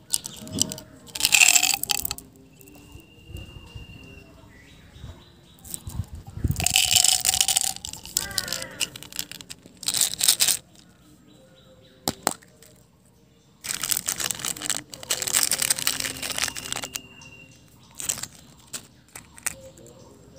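Hands handling and opening small plastic candy containers, a plastic bottle and then a yellow plastic toy ball holding a small toy car. The plastic is heard in several short noisy bursts with quieter handling between them.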